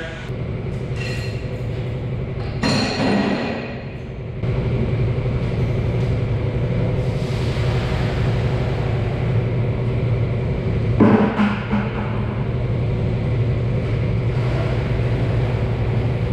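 Milk being poured from a plastic five-gallon bucket into a stainless-steel calf-milk pasteurizer, a hissing splash over a steady low machinery hum. A couple of knocks from the bucket come about three seconds and eleven seconds in.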